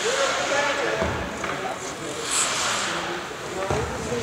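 Ice hockey rink sound: indistinct voices from players and spectators in the hall, with two dull thuds, about a second in and near the end, and a brief high scraping hiss in the middle.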